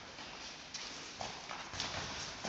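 A few scattered knocks of shoes and a football on a hard sports-hall floor, echoing in the large hall.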